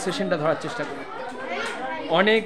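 A group of children chattering, many voices overlapping, with no single clear speaker.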